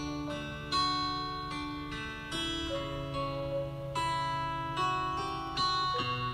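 Background music: a plucked string instrument playing a slow melody, a new note roughly once a second over a steady low bass.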